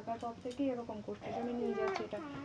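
Speech only: a high-pitched voice talking in a sing-song way, with some long, drawn-out sliding syllables.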